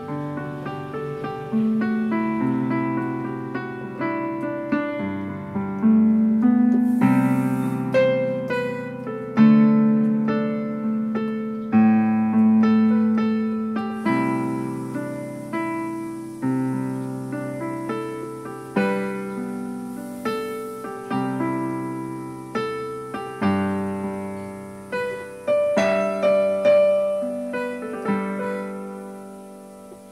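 Electronic keyboard playing in a piano voice: a slow melody over held chords, each struck note decaying. Near the end one chord is left to ring and fade.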